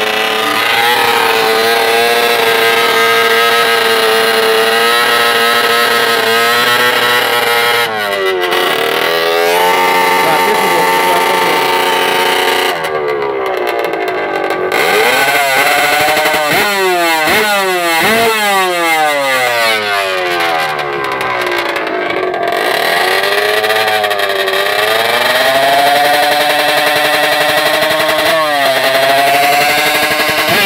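Reed-valve two-stroke drag-racing motorcycle engine revving at the start line, held at high revs for stretches, with the revs swept up and down quickly several times in the middle.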